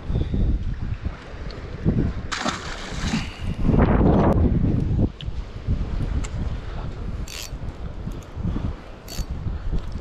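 Wind buffeting the microphone, with a splash about two and a half seconds in as a released bass drops into the lake.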